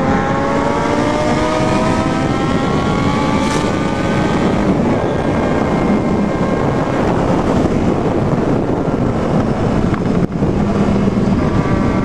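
Motorcycle engine accelerating, its pitch climbing over the first couple of seconds, then running at steady road speed under heavy wind rush on the microphone. There is a brief drop in the sound about ten seconds in.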